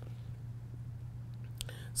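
Room tone in a pause between spoken sentences: a steady low hum, with a faint breath near the end just before the voice comes back.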